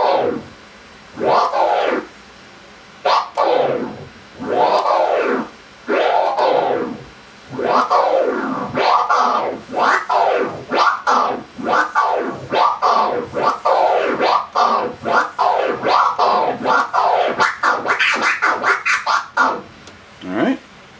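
Flare scratch on a turntable: a record sample pushed forward and pulled back by hand, each stroke cut once midway by a click of the mixer's crossfader, giving a rising-and-falling 'wuh-kowe' sound. The strokes are slow and separated by pauses at first, then quicker and unbroken from about eight seconds in.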